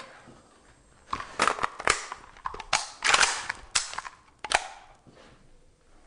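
Kalashnikov rifle handled and swung with no round chambered: a series of sharp metallic clacks and rattles from its parts, about half a dozen spread over a few seconds, then quieter handling.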